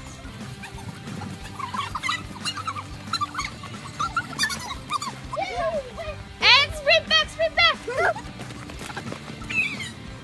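Children shouting and squealing as they run a race, with several high excited cries in a cluster about two-thirds of the way through, over steady background music.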